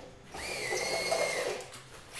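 Cordless drill running in one burst of just over a second: its motor whine rises quickly, holds steady, then drops away.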